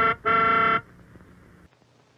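The end of an advertising jingle: a last sung note cut off, then one steady, horn-like held note of about half a second that closes the music. It is followed by a quiet stretch.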